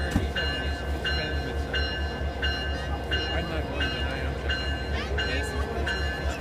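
Diesel locomotive running with a steady low rumble while a bell rings at an even pace, about one and a half strikes a second. Voices talk faintly underneath.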